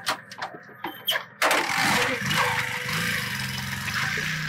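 A small single-cylinder motorcycle engine, a Bajaj Boxer, starts about a second and a half in after a few clicks. It catches suddenly and runs on steadily as the bike pulls away.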